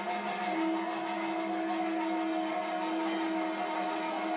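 Puja sounds: a bed of steady ringing tones, with one long steady tone that starts about half a second in and is held on.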